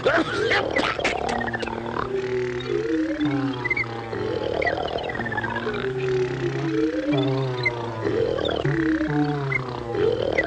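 Cartoon soundtrack: music with steady low notes and sliding notes that fall in pitch about every two seconds, mixed with animal vocal sound effects for the rooster and hens.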